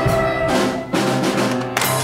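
Brass-band march music playing sustained closing chords, with accents about half a second in and again around the one-second mark, and a sharp crash-like hit just before the end.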